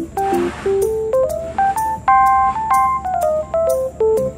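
Instrumental background music: a melody of single keyboard-like notes that climbs through the first two seconds and steps back down near the end.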